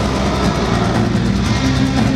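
A live pagan metal band playing at full volume: distorted electric guitars and bass held over fast, even drumming, heard from within the crowd.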